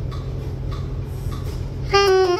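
A steady low rumble, then a saxophone comes in loudly with a held note just before the end, the start of a solo.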